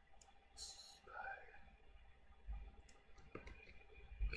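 Near silence broken by a few faint clicks of a computer mouse, with a short hiss about half a second in and a brief faint murmur just after.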